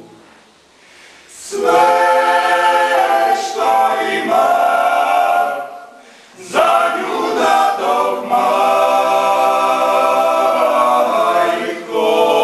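Male klapa ensemble singing a cappella in close harmony. It starts soft, swells in after about a second and a half, breaks off briefly around the middle, then comes back in.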